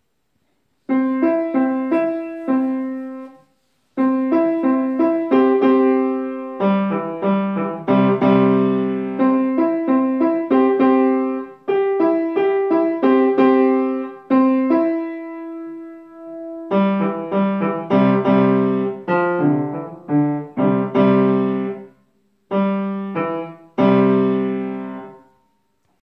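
Grand piano played by a young child practising a simple tune: phrases of single melody notes around middle C with some lower notes added, starting about a second in. It stops briefly about four seconds in and again near the end, with one note held longer midway.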